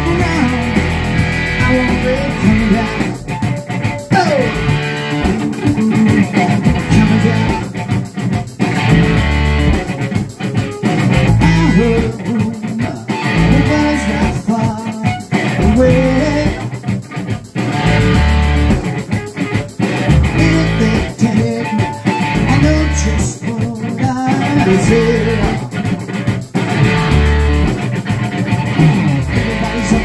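Rock music in an instrumental passage: electric guitar playing over bass guitar, with a sliding guitar note about four seconds in.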